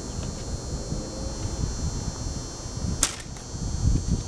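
A homemade hickory-and-bamboo laminated bow is shot once, about three seconds in. The string is released with a single sharp snap as a light arrow leaves the bow.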